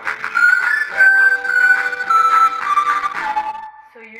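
Acoustic guitar playing under a high, clear melody line that steps down in pitch and fades out near the end.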